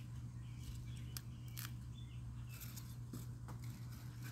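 Small scissors snipping through spinach leaf stems: a handful of faint, sharp snips at uneven intervals.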